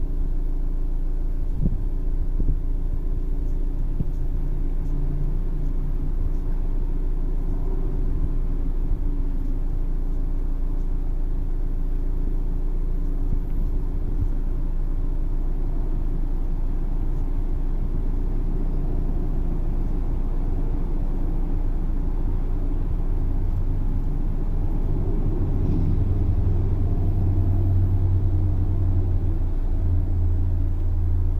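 2014 Mazda CX-5's 2.5-litre four-cylinder engine idling steadily, a low even hum that grows a little louder and deeper in the last few seconds.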